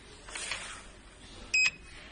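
Handheld inkjet coding printer giving one short electronic beep about one and a half seconds in, as a button on it is pressed. A brief rustle of handling comes about half a second in.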